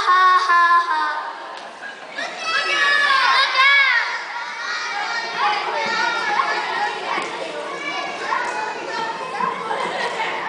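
Children singing a held note that ends about a second in, then many children's voices chattering and calling out at once in a large hall.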